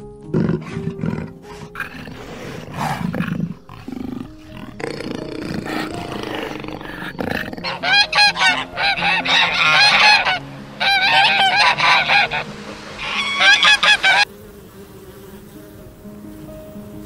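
Canada geese honking: rapid, loud, repeated calls in quick runs through the second half, stopping abruptly near the end. The first half holds quieter irregular rustles and knocks.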